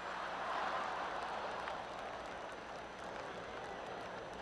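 Large audience laughing and clapping at a joke, swelling about half a second in and then slowly easing off.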